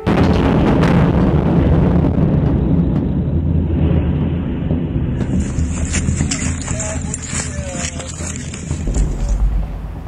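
A rocket strike on a high-rise apartment block: a sudden loud blast, then a deep rumble that slowly dies away over several seconds.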